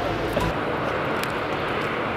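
Background music stops about half a second in, leaving a steady rushing outdoor background noise with a few faint clicks.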